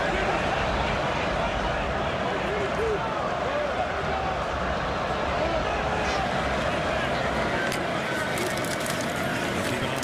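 Football stadium crowd noise: a steady roar of many voices talking and shouting at once. A run of sharp clacks comes near the end.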